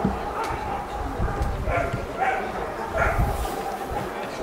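A dog barking about three times in the second half, over background talk.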